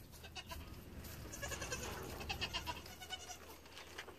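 Young goat kid bleating faintly, a quavering call.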